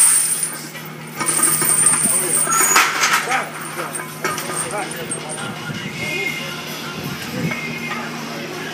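Chains hanging from a plate-loaded squat bar clinking and rattling as the heavy bar is lifted and racked, loudest in the first few seconds, over background music and shouting.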